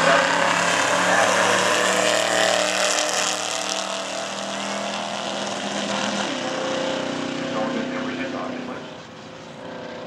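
Two drag-racing cars at full throttle, accelerating hard away down the quarter-mile. The engine note drops and climbs again about six seconds in at a gear change, then fades with distance near the end.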